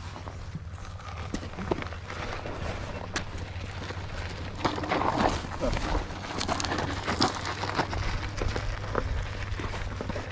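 Tyres crunching over a rough dirt and gravel trail with an irregular rattle of clicks from the electric scooter, growing louder about halfway through, over a steady low wind rumble on the action camera's microphone.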